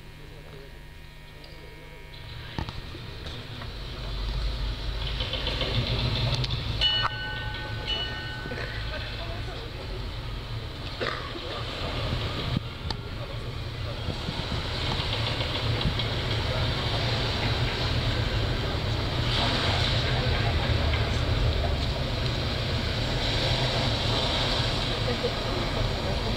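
Sludge/doom metal band's amplified, distorted guitars building a loud, swelling drone, with a few high notes held for a couple of seconds near the eighth second.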